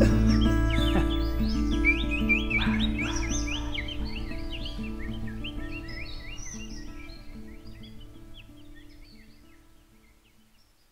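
The music's final sustained chords over a low bass, fading out steadily to almost nothing, with bird chirps layered over them throughout.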